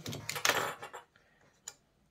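D1S xenon bulbs with their metal bases being handled on a wooden board: about a second of scraping and rattling, then one sharp click near the end.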